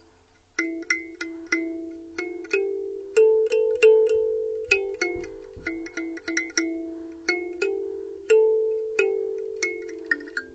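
Small wooden kalimba (thumb piano) plucked at its metal tines, a string of ringing notes at an uneven pace that starts about half a second in, some in quick runs. The player is someone who hasn't yet figured out how to play it.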